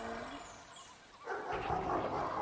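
The last notes of a song fade out, then just over a second in a T-Rex roar sound effect starts, rough and growling.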